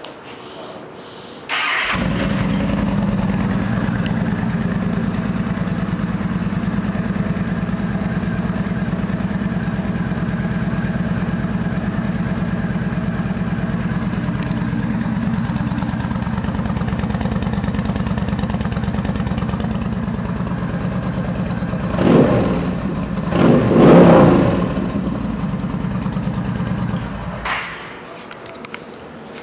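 2011 Yamaha Stryker 1300 V-twin, fitted with aftermarket Cobra twin chrome exhaust pipes, cranked and catching about two seconds in, then idling steadily. It is revved twice near the end and then shut off.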